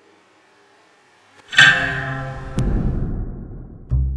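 A taut guitar string, threaded through the bottom of a plastic cup and tightened with a turnbuckle, plucked about one and a half seconds in, ringing with a clear pitched tone that fades over about a second; a second pluck comes near the end. The string's vibration is what sets the water in the cup rippling.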